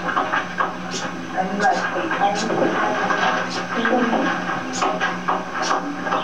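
Murmured overlapping chatter of students in a classroom, with a few sharp ticks of chalk on a blackboard and a steady low hum underneath.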